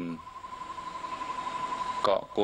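An insect trilling steadily at one pitch, a fine, even pulsing, over a faint hiss.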